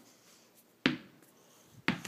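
A ball bouncing twice on a wooden floor, two sharp knocks about a second apart.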